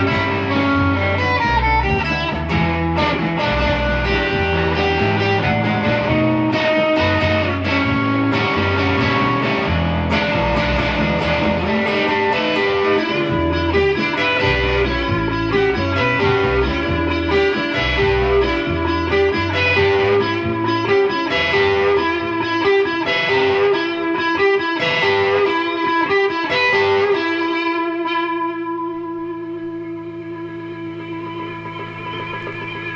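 Overdriven electric guitar, a gold-top Les Paul-type with humbucker pickups, playing lead lines over a band backing of bass and drums. About 27 seconds in the beat stops and a final chord is left ringing and fading.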